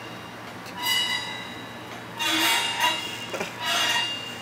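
A drum-kit cymbal scraped with a drumstick, giving a squealing, glass-like ringing tone that swells three times: about a second in, in the middle, and near the end.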